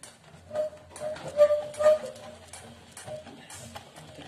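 Irregular knocks and rattles from a table being shaken under a homemade cardboard-box seismograph, with the paper strip pulled beneath its pen. The strongest knocks come in the first half.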